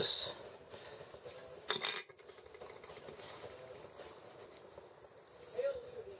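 Plastic model-kit parts being clipped and fitted together: a sharp snip right at the start and another sharp plastic click a little under two seconds in.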